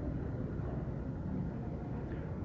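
Steady low rumbling background noise with no distinct events, typical of outdoor ambience such as distant traffic picked up by a phone microphone.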